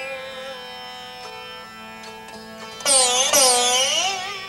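Vichitra veena, a fretless stick zither stopped with a glass slide, playing slow sustained notes that glide smoothly in pitch over a ringing wash of sympathetic strings. About three seconds in, a louder plucked note swoops down and back up twice in curved slides.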